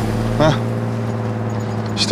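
A steady low hum of two held tones, with a short voice-like sound about half a second in.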